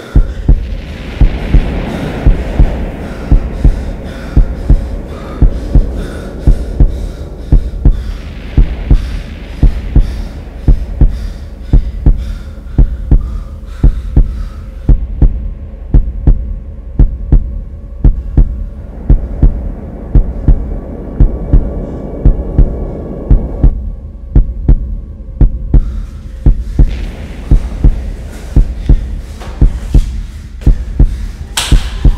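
Heartbeat sound effect: steady double thumps, a pair a little over a second apart, over a continuous low droning hum.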